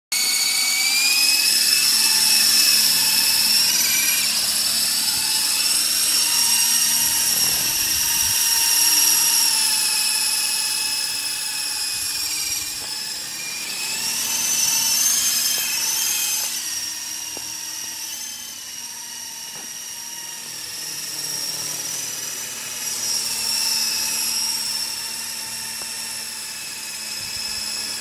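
Double Horse 9053 toy RC helicopter's electric motor and rotors running in flight: a high-pitched whine that shifts up and down in pitch with the throttle. It is loudest at first, close by as it lifts off, then fades and swells as it flies farther away and back.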